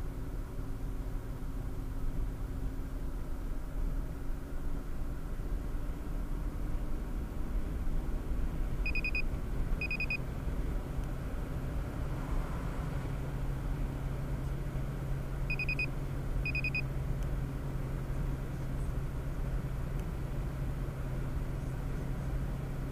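Steady engine and tyre road noise inside a car cruising at highway speed, with the engine note rising slightly about midway as it accelerates. Two pairs of short high electronic beeps sound, one pair near the middle and another a few seconds later.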